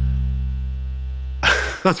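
Single-coil pickup hum from a '51-style Fender Precision Bass: a steady low mains buzz under a bass note that fades out. The simple single-coil pickup picks up electrical interference from the room, which is why it buzzes.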